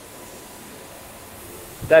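Steady, even background hiss with no distinct events, then a man's voice starts near the end.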